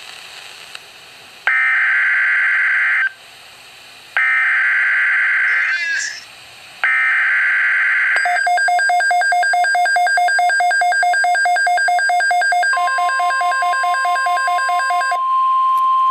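Weather alert radio receiving an Emergency Alert System activation: three short bursts of SAME digital header data. From about eight seconds the receiver gives a rapid pulsing beep alarm. About four seconds later the steady National Weather Service alert tone joins it.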